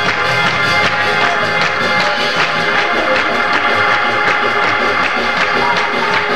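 Live gospel music from an organ and a drum kit, played at a steady upbeat tempo, with the congregation clapping along to the beat.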